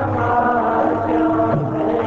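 Devotional kirtan: voices chanting a sung devotional melody with long held notes, at a steady loudness.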